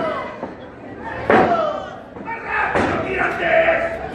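Two loud slaps on the wrestling ring's canvas, about a second and a half apart, ringing in a large hall: a referee slapping the mat for a pin count. Shouting voices fill the gaps between them.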